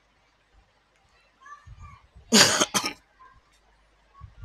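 A man clears his throat with a cough: one loud, harsh burst about two and a half seconds in, followed at once by a shorter second one.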